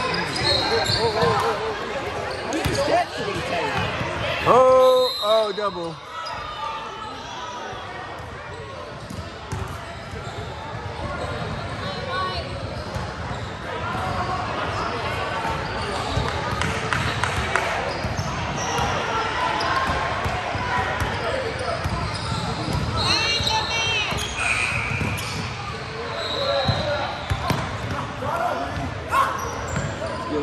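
A basketball game on a hardwood gym court: a ball bouncing on the floor and players running, with voices from players and spectators. The sound echoes in the large hall.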